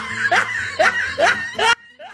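Edited-in laughter sound effect: a quick run of about five short laugh bursts in steady rhythm that cuts off suddenly near the end.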